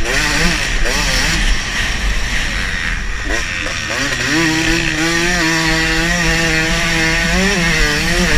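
Dirt bike engine revving hard, its pitch rising and falling with throttle and gear changes, then holding a steadier high pitch for a few seconds from about halfway through before easing near the end.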